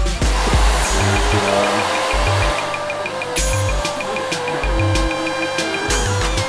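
Background music with deep bass notes and held melody notes, joined about a second and a half in by a quick, steady high ticking, about five ticks a second.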